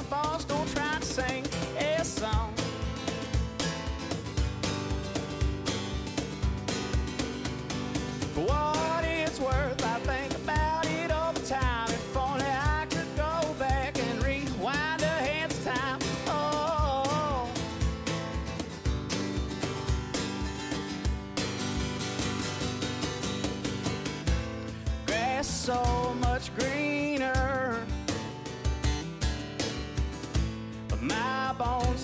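Country song with acoustic guitar and a steady beat. A wavering lead melody line comes in around the middle and again near the end.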